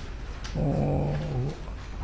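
A man's voice holding one drawn-out, wordless hesitation sound for about a second, starting about half a second in.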